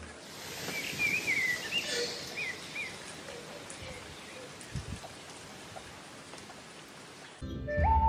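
Steady rain falling, with a small bird chirping a few times in the first three seconds. Background music comes in near the end.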